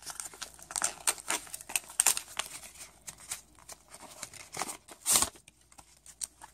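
Crinkly gift wrapping being handled and pulled open, crackling and rustling in irregular bursts, with one louder rustle about five seconds in.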